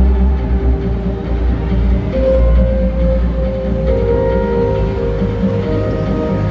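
Music played over an arena's sound system, with a heavy steady bass and long held notes that shift to a new chord about two seconds in.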